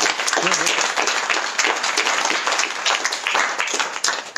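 Audience applauding, many hands clapping together steadily.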